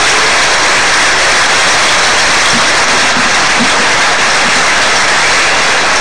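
Large stadium crowd applauding steadily, a dense even clapping that holds at one level.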